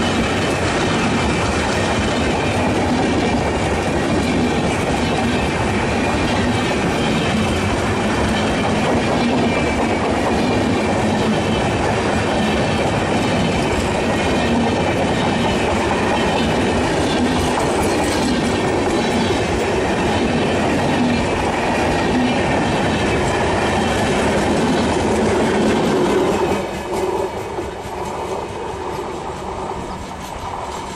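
An express train's passenger coaches rolling past at speed: a loud, steady rumble of wheels on the rails with clickety-clack. The sound drops off sharply near the end as the last coach passes and the train pulls away.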